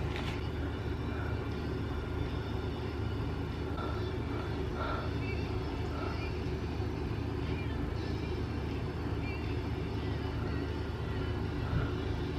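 A steady low hum, with faint even tones above it and a few faint brief sounds around the middle.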